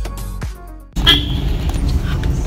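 Electronic background music with a steady beat, fading out about a second in. It then gives way abruptly to the low rumble of a jeep's engine and road noise heard inside the cabin, with a brief high tone just after the change.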